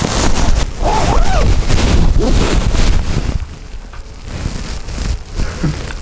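Nylon puffer jacket rustling and swishing as it is pulled on and the arms pushed through, loud for about the first three seconds and then quieter. A short vocal sound comes about a second in.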